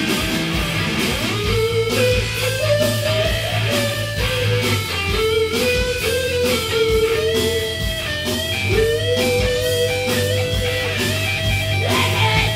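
Live rock band playing loud: an electric guitar plays a lead line of held notes with pitch bends over steady drums and bass.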